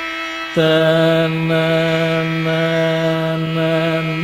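Male Carnatic vocalist holding one long, steady note that comes in about half a second in, over a sustained drone.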